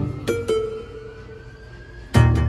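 Alesis Strike Pro electronic drum kit pads triggering pitched, plucked-string-like sounds through the kit's sound module: one hit at the start, two lighter hits about half a second in, then a held note that fades away.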